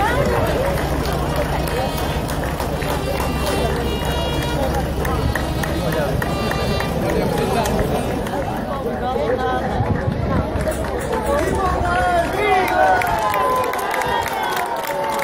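Parade crowd chatter: many voices talking at once, over a low steady hum that fades out about ten seconds in. Near the end the voices grow livelier.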